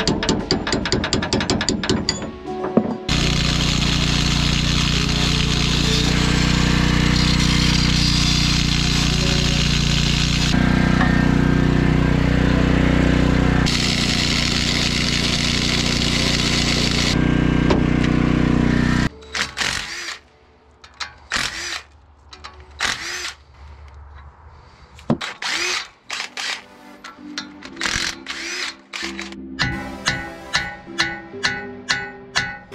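Angle grinder with a cutoff wheel running steadily for about sixteen seconds, cutting rusted leaf-spring U-bolts that are too corroded to unbolt; it starts and stops abruptly. Before it, rapid ratchet-wrench clicking; after it stops, scattered light metallic clicks and taps.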